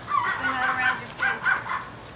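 Seven-week-old toy schnauzer puppies yipping as they play-wrestle: a quick run of about six short, high yips.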